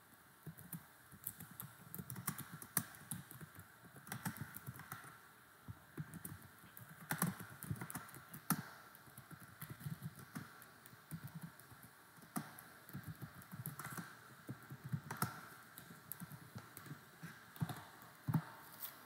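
Typing on a computer keyboard: faint, irregular runs of key clicks with short pauses between them.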